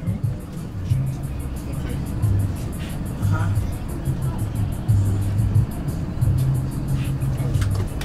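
Low engine and road rumble of a moving bus heard from inside, with music playing over it: a steady bass line that steps between a few low notes.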